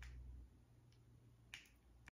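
Near silence: room tone, with a faint low hum fading out about half a second in and a faint click about one and a half seconds in.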